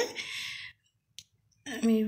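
A woman's speech trails off into a breathy hiss. Then comes about a second of dead silence broken once by a single short click, before her voice returns near the end.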